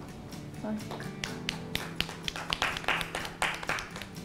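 A few people clapping: scattered claps from about a second in that thicken into brief applause near the end, over soft background music.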